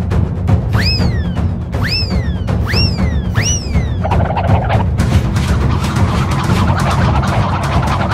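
Cartoon sound effects over a steady low rumble: four squeaky whistles that each rise and fall in the first half, then a rattling clatter from about halfway through as cans and a juice box tumble through the ceiling.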